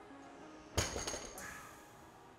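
A weight plate set down in the gym: one sudden clank about three quarters of a second in, with a short metallic ring and a couple of smaller knocks after it.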